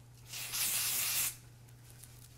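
Aerosol dry shampoo sprayed onto the hair roots in one hissing burst of about a second.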